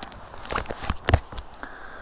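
A few footsteps and scuffs on asphalt strewn with dry leaves, heard as short sharp crunches mostly in the first half.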